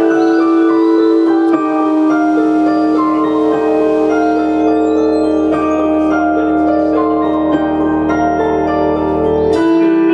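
A live rock band's song intro, led by a keyboard holding sustained chords while higher notes change above them. A low sustained bass tone comes in about two seconds in and cuts off near the end, at a single sharp hit.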